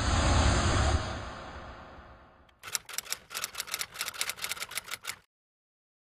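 Logo-animation sound effects: a whoosh with a deep rumble that swells and fades over about two and a half seconds, then a quick run of clicks and ticks for about two and a half seconds that stops suddenly.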